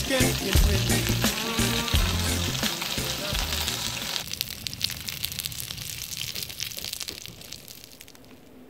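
Small potatoes sizzling as they fry in a camping cook pot, stirred with a spoon. Music with a bass beat fades out about halfway through, and the sizzle itself fades away toward the end.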